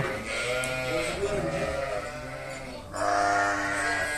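Sheep bleating: several overlapping, wavering bleats, then one long, steady bleat starting about three seconds in.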